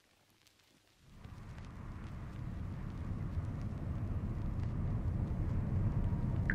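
A low, steady rumble fades in about a second in and grows gradually louder.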